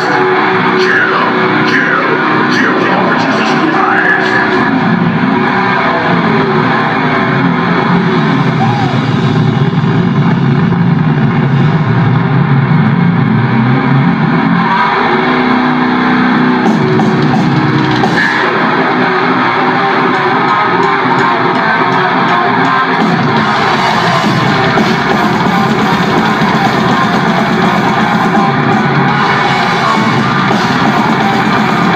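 A death metal band playing live at full loudness: distorted electric guitar, bass and drums in a dense, unbroken wall of sound.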